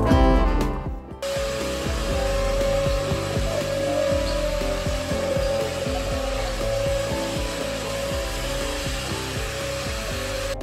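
Guitar music cuts off about a second in. An electric vacuum cleaner then runs steadily, a continuous rushing hiss with a steady whine.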